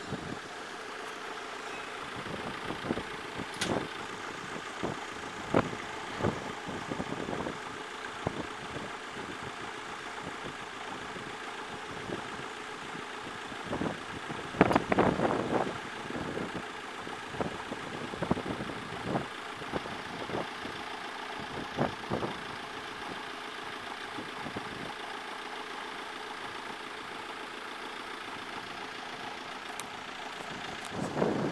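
Road vehicle engine idling steadily, with scattered short knocks and a louder rush of noise lasting a second or two about halfway through.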